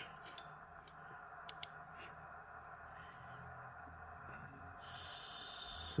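A few faint clicks on a laptop over low, steady room noise, with a short hiss near the end.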